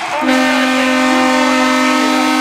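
Ice hockey arena horn sounding a loud, steady chord of several held notes, starting a moment in, as the game clock reaches zero: the signal that the game is over.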